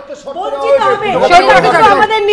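Speech only: several people talking over one another.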